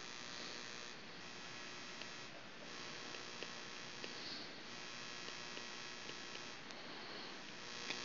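Faint, steady electrical hum with hiss, made of several held tones, with a few small, faint ticks scattered through it.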